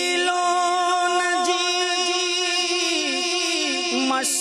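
A man singing a naat unaccompanied into a microphone, holding one long note with a slight waver through almost the whole stretch.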